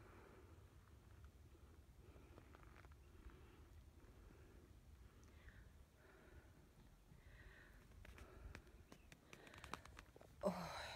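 Near silence: a faint low rumble, with a few small clicks of the phone being handled near the end.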